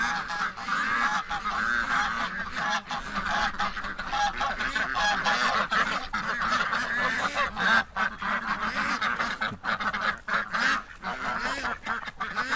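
A flock of domestic ducks quacking and calling continuously, many birds overlapping, as they crowd out of their pen.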